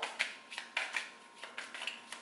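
An oracle card deck being shuffled by hand: a handful of short, irregular clicks of cards against each other.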